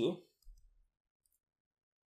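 The tail of a spoken word, then a faint low thump about half a second in as a stylus touches the tablet to write an equals sign, then near silence.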